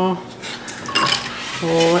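Stainless steel mixing bowl and kitchen utensils handled on a stone countertop, with a short metallic clink about a second in.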